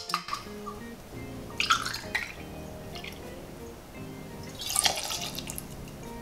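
Gin poured from a bottle into a steel jigger and tipped into a metal mixing tin: short splashing pours, the main ones about two seconds in and about five seconds in. Background music plays under them.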